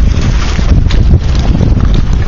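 Wind buffeting the microphone: a loud, steady low rumble with a hiss over it.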